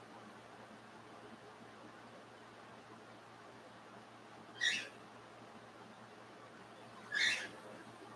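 Pet cockatiel calling: two short, high-pitched calls about two and a half seconds apart over faint room tone.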